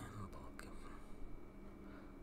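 Faint room tone with soft breath or mouth noise from a person close to the microphone, and one small click about half a second in.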